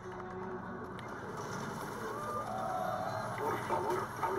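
Movie trailer soundtrack: music over a steady low drone, with indistinct voices and a voice beginning near the end.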